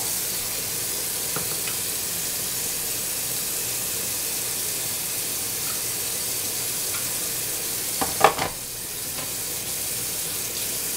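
Kitchen tap running steadily into the sink, with a brief clatter of dishes about eight seconds in.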